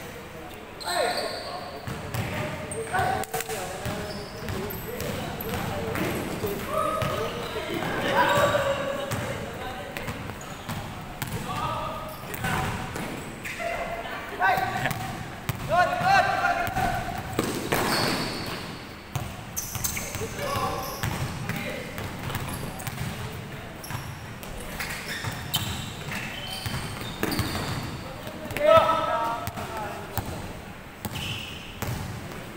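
A basketball dribbled and bouncing on a hardwood court during a game in a large indoor gym, with short impacts throughout, mixed with players' voices calling out on the court.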